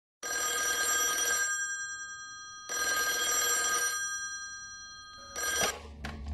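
Corded telephone ringing: two full rings about a second and a quarter each, then a third ring cut off after a fraction of a second near the end as the handset is picked up.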